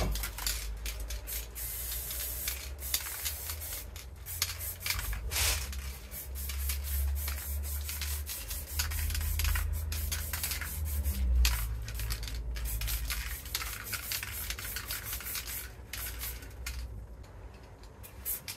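Aerosol spray-paint can hissing in many short bursts, over a low rumble.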